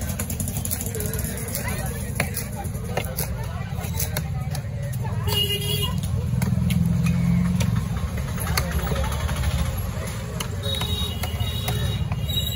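Busy fish-market din: a steady low rumble of traffic and engines under background chatter, growing louder for a couple of seconds about six seconds in, with a short tone just before. A cleaver knocks a few times on the wooden chopping block in the first seconds.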